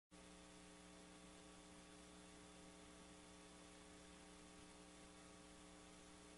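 Near silence: a faint, steady electrical hum of several constant tones over a low hiss.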